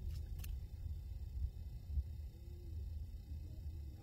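Low, steady wind rumble on a handheld phone's microphone out on the ice, with two faint clicks just after the start.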